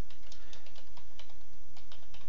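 Typing on a computer keyboard: a quick, even run of key clicks as a word is typed.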